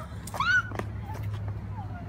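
Brief high squeaky vocal sounds, like a cat's mew, a few times over a low steady hum, with light clicks.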